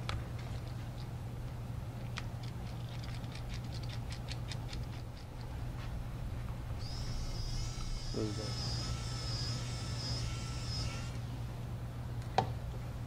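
Light clicks of a small precision screwdriver working the screws out of a Samsung Galaxy S3's plastic midframe, over a steady low hum. About seven seconds in, a high, wavering whistle-like tone starts and lasts about four seconds.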